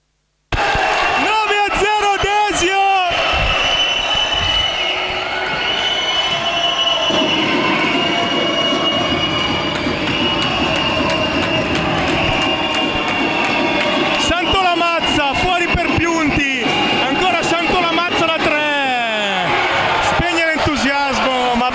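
Indoor basketball game sound: steady crowd noise and voices in the gym, with sneakers squeaking on the hardwood floor in quick bursts and the ball bouncing.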